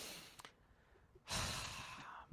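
A man's breathing: a faint breath out at the start, then a louder, longer breath in during the last part.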